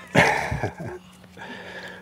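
A short burst of laughter, breathy and broken into a few pulses, trailing off about half a second in.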